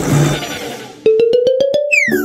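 Synthesized cartoon sound effect: after about a second of soft low rumble, a slowly rising tone with a rapid ticking of about seven clicks a second starts abruptly, then gives way to a falling whistle near the end. It is a surprise cue.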